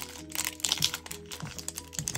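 Foil Pokémon booster-pack wrapper crinkling and crackling in quick irregular clicks as hands open it, over quiet background music.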